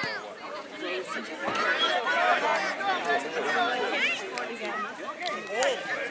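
Many high children's voices chattering and calling out at once, overlapping, with no clear words. There is a sharp knock about five and a half seconds in.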